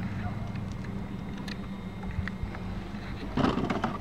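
Steady low wind rumble on the microphone, with a few light clicks and knocks as a person shifts about and handles gear in a small boat. A louder, voice-like sound comes near the end.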